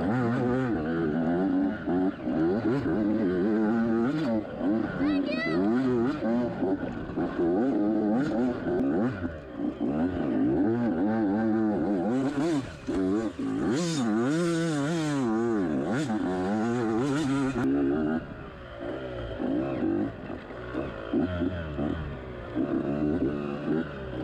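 Yamaha YZ85 two-stroke dirt-bike engine, heard close up on the bike, revving up and down constantly along a woods trail. From about twelve seconds in there is a few-second stretch of loud splashing and spraying as the bike goes through mud and water, and after that the revs drop lower and run more unevenly.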